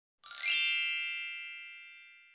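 A bright, high metallic chime struck once, with a sharp attack about a quarter of a second in, then ringing and slowly fading away.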